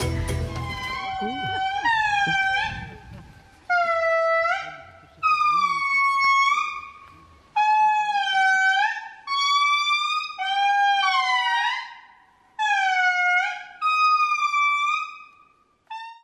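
Indri song: a series of about ten long, loud wailing notes, each bending up and then down in pitch, with short breaks between phrases.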